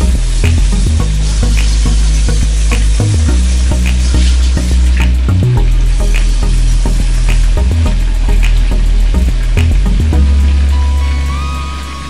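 Food frying in a covered stainless-steel pan on an electric stove: a steady sizzle with scattered crackling pops. Music with a deep bass line plays alongside, and a melody comes in near the end.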